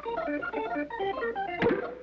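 Fast, bouncy organ-like cartoon music, a quick run of short stepped notes. About one and a half seconds in, a loud sudden sound effect with a sharply falling pitch cuts in.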